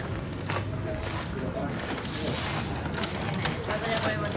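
Indistinct voices of people talking at a distance, over steady outdoor background noise with a few light clicks.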